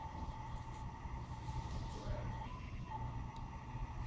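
Steady low room hum with a thin high whine, and faint soft slaps and brushes of hands and forearms in a hand-trapping drill, one a little sharper near the end.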